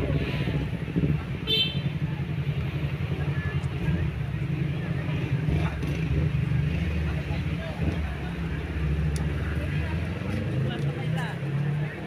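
Indistinct voices over a steady low rumble.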